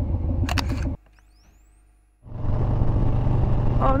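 Harley-Davidson Street Bob 114 Milwaukee-Eight V-twin idling, with a phone camera shutter click about half a second in. The sound then drops out for about a second, and a little past two seconds the engine comes back running steadily under way, with a rush of wind noise.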